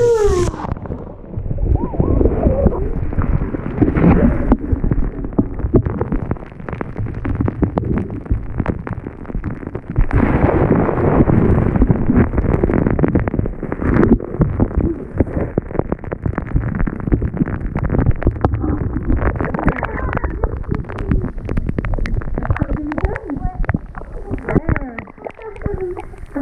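Bath water sloshing and churning, heard from a camera held under the water in the tub: dull and muffled, a rumble full of knocks and bumps.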